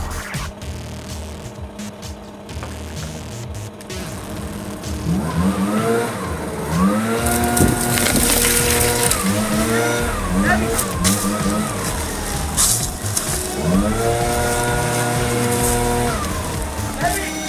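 Backpack leaf blower engine being revved in repeated bursts, starting about five seconds in: each time the pitch climbs, holds for a second or two, then drops, with a rush of air.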